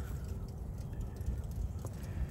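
Low wind rumble on the microphone, with faint soft scratching from a small brush scrubbing dirt off a dug-up corroded metal knee buckle.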